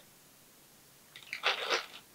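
Near silence, then about a second in a short crinkling rustle from a small silica gel desiccant packet being handled.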